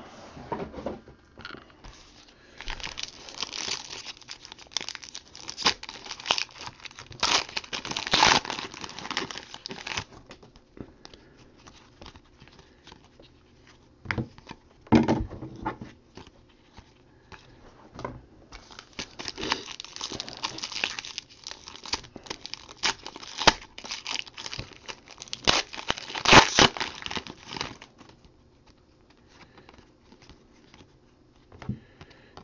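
Trading-card pack wrappers being torn open and crinkled, with cards slid and shuffled by hand, in several bursts of rustling with short quiet gaps between them.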